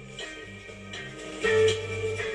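TENMIYA RS-A66 boombox playing music from an FM radio station, getting louder about one and a half seconds in. The radio is not very good quality, with hoarse reception that the owner puts down to a weak radio module rather than the antenna.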